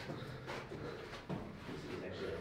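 Faint footsteps on the rocky floor of a narrow mine tunnel, a couple of soft steps.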